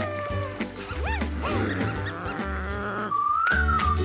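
Playful cartoon background music with a steady low beat, with two quick squeaky rising-and-falling sound effects about a second in, and a high wavering tone in the last second as the show's logo sting begins.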